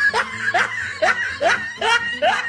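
Laughter: a run of short pitched 'ha' bursts, each rising in pitch, about two to three a second.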